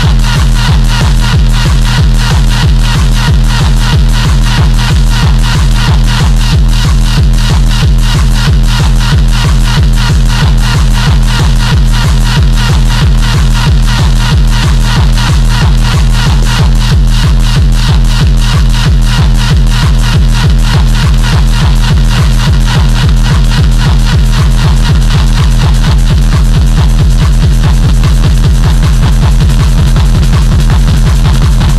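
Hard, dark electronic drum and bass (darkstep) track, loud and dense, with a fast, even kick drum and heavy distorted bass throughout.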